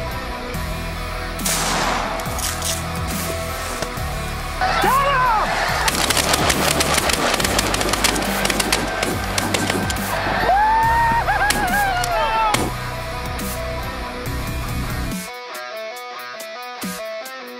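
Heavy rock music track with shotgun shots cut in, densest in the middle, and rising-and-falling bird calls about a third of the way in and again later. The music drops out near the end.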